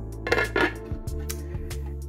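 Glass lid set down onto a slow cooker's crock, a brief clink and clatter about half a second in, over steady background music.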